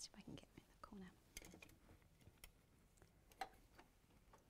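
Near silence, with faint low voices and a few soft clicks.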